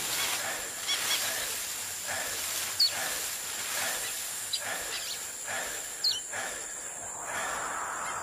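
Nature ambience of a forest: a steady background hiss with scattered short, high bird chirps, about half a dozen single calls spread through.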